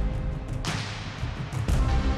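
Background music, with a swishing sweep of noise about half a second in. The bass thins out, then comes back in strongly near the end.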